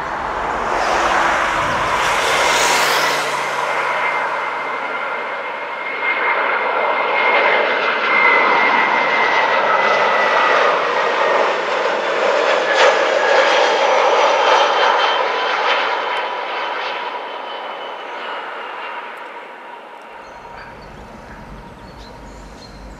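Airbus A320 jet airliner on landing approach passing low by: its engine noise swells over the first few seconds, carries a high whine that slowly sinks in pitch as it passes, and fades away near the end.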